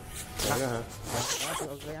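Zipper on a ski jacket being run along its track, in two pulls: one right at the start and a longer one about a second in.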